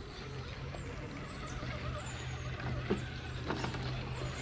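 An electric RC rock crawler's motor and gears whine as it crawls over rock, with a couple of knocks from tyres and chassis on the stone near the end.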